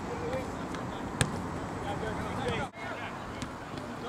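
Steady outdoor background hiss with faint, distant voices, and a single sharp knock about a second in. The sound drops out for an instant late on.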